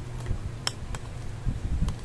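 Metal spoon stirring a thick powdered-milk paste in a ceramic bowl, clinking lightly against the bowl a few times.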